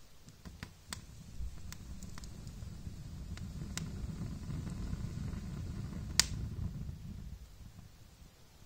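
Small kindling fire crackling with scattered sharp pops, the loudest about six seconds in, over a low rumble that swells through the middle and fades near the end.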